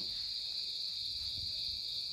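Insects, crickets by the sound, trilling steadily at a high pitch without a break.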